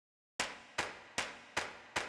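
Sharp percussive hits, evenly spaced about two and a half a second, each dying away quickly. They start after a brief silence and set the beat for a rock music track.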